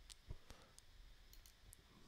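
Near silence with a few faint clicks of a computer mouse, the two clearest about a third and half a second in.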